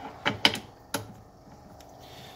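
Metal clicks and clacks as a modular vise part is handled and set against the fixture plate: three sharp clicks in the first second, the loudest about half a second in, then a couple of faint ticks.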